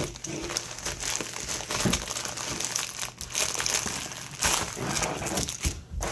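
Poly bubble mailer being torn open and handled: continuous crinkling of plastic packaging with many small crackles.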